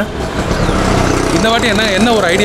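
Street traffic noise with a motor vehicle engine running nearby, then a man's voice starts again about a second and a half in.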